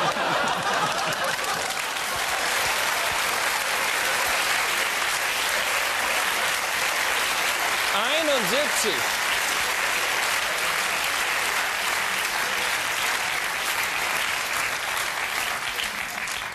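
Studio audience applauding steadily for a long stretch, with a short rising-and-falling vocal call from the crowd about halfway through, easing off near the end.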